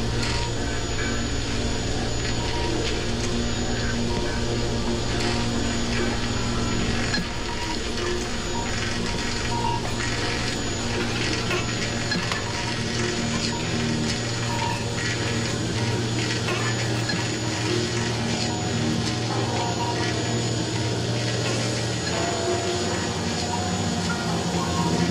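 Jean Tinguely kinetic sculptures running: a steady electric-motor hum under a dense rattling and clicking of metal wheels, belts and linkages.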